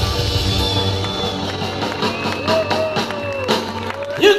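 Live rock band playing through a festival PA, recorded from the audience; about a second in the bass drops away and the music thins to a quieter instrumental break with a few sharp hits.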